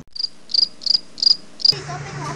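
Cricket chirping: five short, high chirps, a little under three a second.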